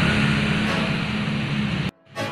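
An engine running steadily, a low hum under a loud hiss, cut off abruptly just before the end.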